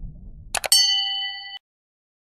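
Two quick clicks, then a bright notification-bell ding that rings with several steady tones for under a second and cuts off suddenly: the sound effect of clicking a subscribe button's bell icon.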